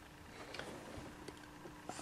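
Quiet room with a faint steady hum and a few light, scattered ticks and clicks, as from handling the phone and camera on the desk.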